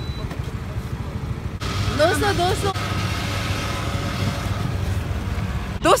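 Petrol dispenser running as fuel is pumped through the nozzle into a scooter's tank, a steady hiss with a thin whine that comes on sharply about a second and a half in, over a low rumble of engines.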